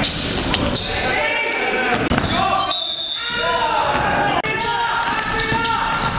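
Basketball game in a gym: the ball bouncing on the hardwood floor, with indistinct players' voices echoing in the large hall.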